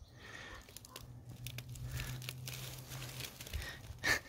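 Faint crackling and rustling of dry leaf litter, a scatter of small crisp crackles, over a steady low hum.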